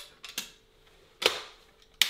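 Shotgun being handled: a couple of light metallic clicks, then a louder clack a little over a second in.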